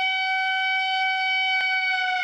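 A single long, steady high tone with a full set of overtones. It slides down a little in pitch as it begins to fade at the end.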